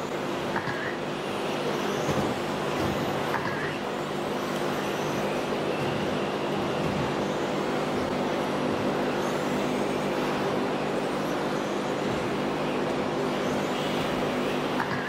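Electric RC racing cars running on an indoor track: a steady whir of motors and tyres with a constant low hum underneath, and a few sharp knocks in the first few seconds.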